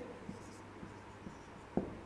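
Whiteboard marker writing on a whiteboard: faint strokes of the tip, with a short tap near the end.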